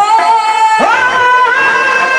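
Live devotional bhajan singing: a singer holds long, high sustained notes over the accompaniment, each note sliding up into pitch, with a new note starting about a second in.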